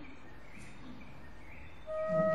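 Quiet room tone with a faint steady hiss. Near the end a held musical tone sets in, with higher overtones above it.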